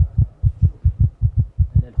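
A steady, fast, low throbbing pulse like a heartbeat, about six beats a second: a suspense background sound bed.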